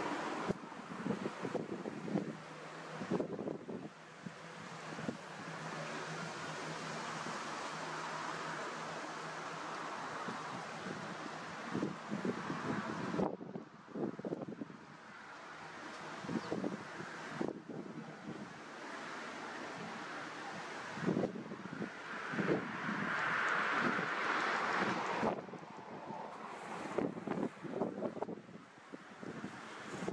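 Wind blowing across the microphone, a rushing noise that swells in gusts with irregular low buffeting thumps. A faint low hum runs under it for the first few seconds.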